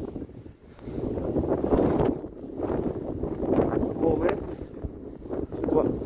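Wind buffeting a phone microphone in a snowstorm, rising and falling in gusts, with rustling and crunching as someone trudges through deep snow.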